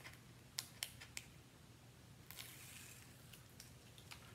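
Faint handling of mat board and double-sided foam tape: a few light clicks in the first second, then a brief soft rustle a little past halfway through.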